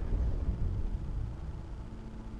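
Low rumbling noise that slowly fades.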